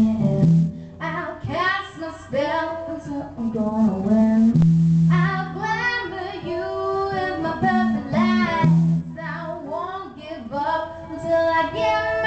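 Live blues-rock song: a woman singing lead vocal in phrases with some long held notes, over electric guitar.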